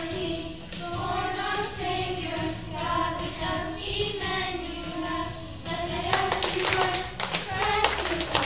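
A group of children singing a song together with accompaniment. About six seconds in, they start clapping in rhythm, about four claps a second, while they keep singing.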